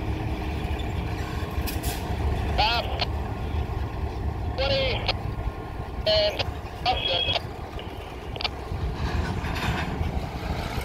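CN diesel locomotives rolling slowly past, their engines giving a steady low rumble. Short high, pitched calls or squeals break over it several times.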